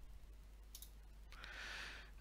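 A single computer mouse click just under a second in, closing a dialog, over faint steady room hum; a soft in-breath follows near the end.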